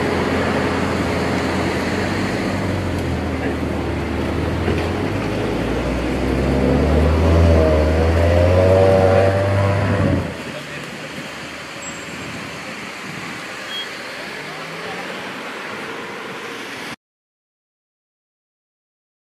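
Car engine running at the kerb with street noise and voices; a wavering tone builds over a few seconds, then the sound drops suddenly to quieter street background about ten seconds in and cuts off shortly before the end.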